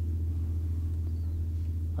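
A steady low hum with several even tones held together, unchanging through the pause.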